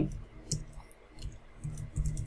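A few separate key clicks from typing on a computer keyboard, with short pauses between them.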